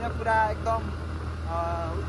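Motorcycle running steadily on the move, a low drone under a man's talking.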